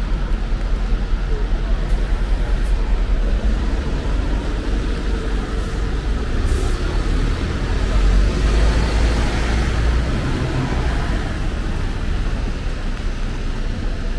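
Road traffic on a wet city street: engines and tyres hissing on the wet road. A vehicle passes, loudest about eight to ten seconds in.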